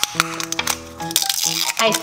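Background music with steady held notes, over a run of small crackles and clicks from thin plastic film being peeled off a hard plastic toy container.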